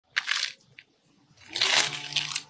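A metal blade scraping and chipping at the hardened mud seal on the lid of an old earthenware wine jar: a short gritty scrape near the start, a faint click, then a longer scrape in the second half.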